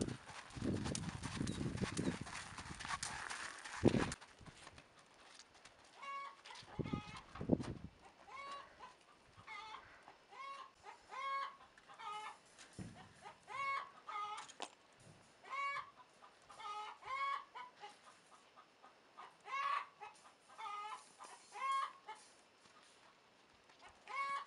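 Hooves and scuffing of a horse moving over dirt for the first few seconds, ending in a sharp knock. Then chickens clucking: a long run of short pitched calls, roughly one a second, from about six seconds in until near the end.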